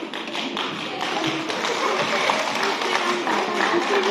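Music with a busy, rhythmic tapping beat, at a steady level.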